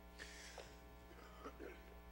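Near silence, with a faint steady electrical hum throughout and a soft brief hiss in the first second.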